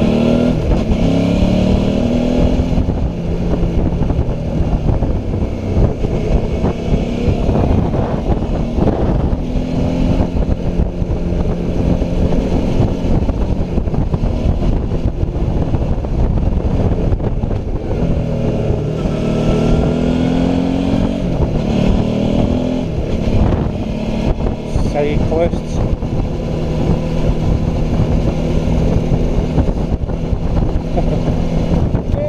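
Suzuki V-Strom's V-twin engine running on the move, heard from a helmet-mounted camera with wind rushing over the microphone. Its pitch climbs in short steps as it accelerates near the start and again about twenty seconds in.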